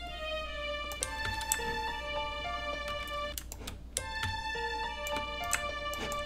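Sustained string-ensemble notes from a Roland Zenology software synth, stepping between a few pitches, with sharp mouse or keyboard clicks as the notes are entered.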